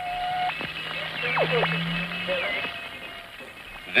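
Radio receiver being switched on and tuned across the dial. A low hum and a steady whistle are followed by quick whistles that sweep steeply down in pitch and a short wavering one, the squeals of passing between stations, over faint hiss.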